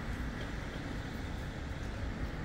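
Steady low rumble of outdoor street background noise, with no distinct events.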